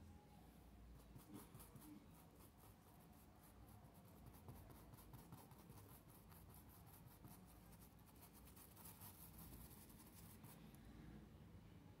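Faint, quick strokes of a paintbrush dabbing and rubbing paint into fabric, many in a row, in near silence.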